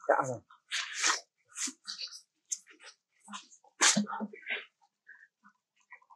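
Macaque monkeys making short, irregular calls and squeaks, mixed with brief scuffles in dry leaves on the ground.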